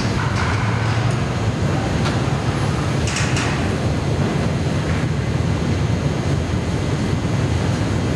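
A steady low mechanical drone runs unchanged throughout, with a few faint clicks about three seconds in.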